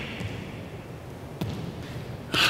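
A single sharp thud on a wooden gymnasium floor about one and a half seconds in, from a person doing burpees; otherwise the quiet tone of a large gym hall.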